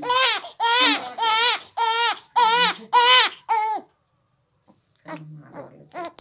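Newborn baby crying in a run of short, loud wails, about two a second, that stop abruptly about four seconds in; a hungry cry for the nipple. A fainter voice follows near the end.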